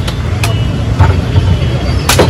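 A machete chopping into a green coconut: two sharp strikes about half a second apart, over a steady low rumble.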